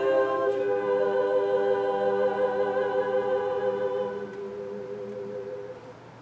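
Women's treble choir singing a cappella, holding a final sustained chord. The upper voices fade out about four seconds in, and a lower note lingers a little longer before stopping just before the end.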